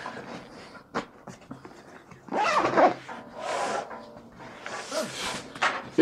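A nylon camera backpack being handled and turned upright on a table: several brushing swishes of fabric and a few light knocks and clicks.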